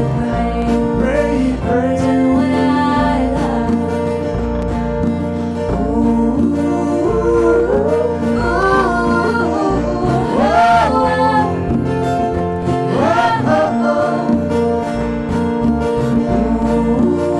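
Live band playing a slow country-gospel style song: strummed acoustic guitars over an electric bass line, with voices singing the melody.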